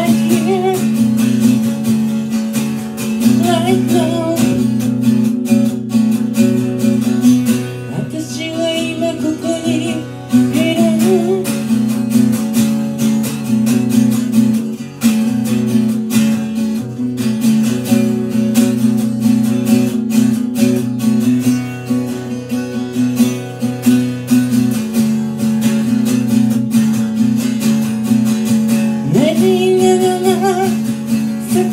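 Live acoustic guitar strummed steadily, with a woman singing over it in parts; her voice drops out for a stretch in the middle, leaving the guitar alone, and comes back near the end.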